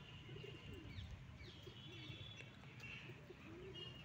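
Faint outdoor bird calls: a dove cooing in three low, wavering phrases, with thin high whistles from other birds.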